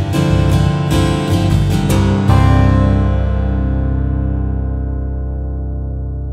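Steel-string acoustic guitar in the open C G D F C E tuning, played with a pick. Single notes are picked for about two seconds, then a final chord is left to ring and slowly die away.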